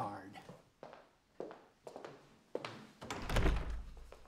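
Footsteps knocking a few times on a wooden floor, then a heavy wooden office door thudding as it is pulled open, the loudest sound, about three seconds in.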